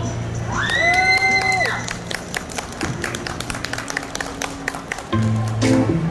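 The last held notes of a violin piece over a backing track, one long high note sliding up and then falling away, followed by an audience clapping and cheering. A new music track starts about five seconds in.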